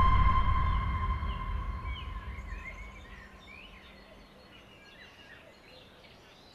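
Fading tail of a film transition sound effect: a low boom with a ringing tone that dies away over about three seconds. It gives way to quiet outdoor ambience with birds chirping.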